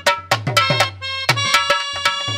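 Dholak and harmonium playing without singing: quick dholak strokes, with deep ringing bass-head notes, over sustained harmonium chords. A new held chord comes in about a second in.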